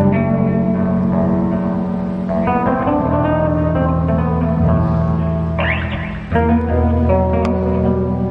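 Multi-string electric bass guitar played solo through an amplifier: ringing chords and melody notes over sustained low notes, with a brief strummed sweep a little before six seconds in.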